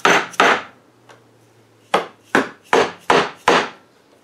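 Rubber mallet knocking a new wooden rocker onto the legs of a rocking chair, seating it for a test fit: two strikes, a short pause, then five more in quick succession.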